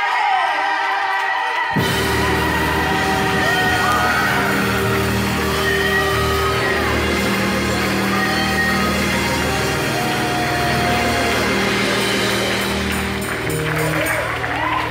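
Live gospel music: a lead singer with a microphone sings over a choir, and the band comes in with steady low held chords about two seconds in.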